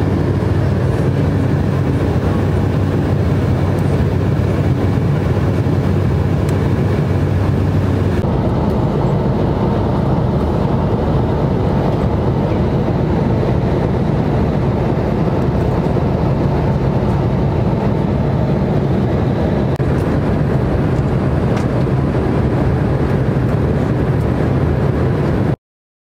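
Steady cabin noise of a jet airliner in flight: the engines and rushing air heard from inside the cabin. The noise shifts slightly about eight seconds in and cuts off abruptly just before the end.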